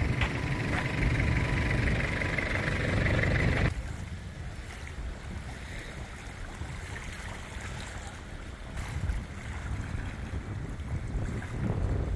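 Outdoor shoreline ambience: a low rumble of wind on the microphone under a steady hiss, which turns suddenly quieter about four seconds in.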